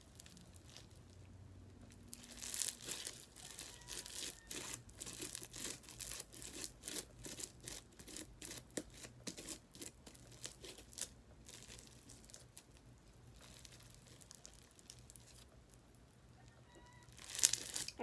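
Sticky glitter slime being stretched and squished by hand, giving a rapid run of small wet clicks and crackles for several seconds, then quieter handling, with a louder burst of crackling near the end.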